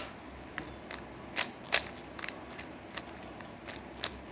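Plastic 3x3 Rubik's cube being turned quickly by hand, its layers clicking round in an irregular string of clicks, two louder ones about a second and a half in.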